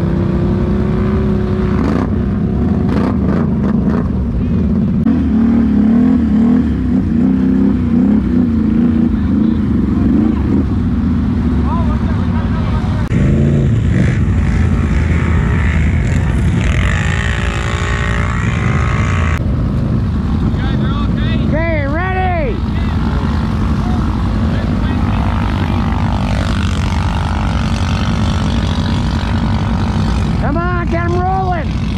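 Off-road ATV engines running loud and steady in the mud, their pitch wavering, with a few quick revs that rise and fall a little over two-thirds of the way in.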